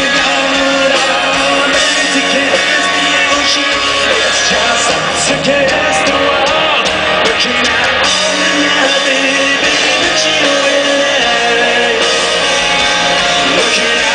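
Live rock band playing electric guitars and drums with a sung lead vocal, loud and steady, recorded from within the crowd.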